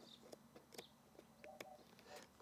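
Near silence, with a few faint ticks from a hand blade cutting through the cloth backing of a seat heater pad.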